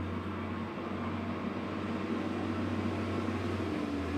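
Steady low hum under an even hiss of background noise, with no distinct knocks or clicks.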